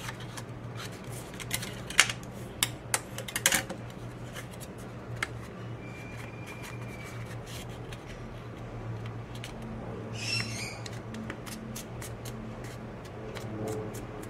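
Heavy-weight paper being folded and creased by hand: crisp crackles and clicks of the stiff sheet, loudest in a cluster a couple of seconds in, with a short rustle near ten seconds, over a steady low hum.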